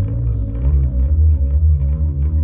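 Electric bass guitar played live and loud. A held low note gives way about half a second in to a fast, even run of repeated low notes.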